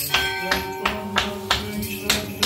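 Small metal bells jingling in a steady rhythm, about three strikes a second, each ringing briefly, over a low sustained chanted note.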